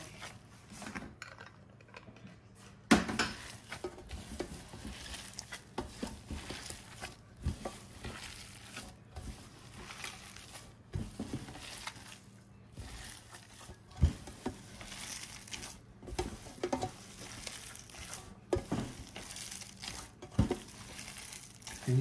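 Raw lamb mince being squeezed and kneaded by a gloved hand in a stainless steel tray: wet squishing with irregular knocks against the metal tray. The loudest knock comes about three seconds in.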